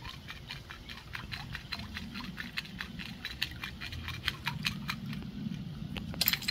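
Two-piece jointed wooden wake bait clacking as it kicks back and forth on a steady retrieve: the wooden sections knock together in hard, cue-ball-like clicks, several irregular clicks a second, over a low background rumble.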